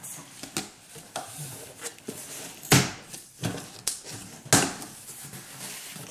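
Cardboard shipping box being opened by hand: packing tape pulled loose and the flaps pried open, a run of crackles and scrapes with two louder tearing sounds about halfway through.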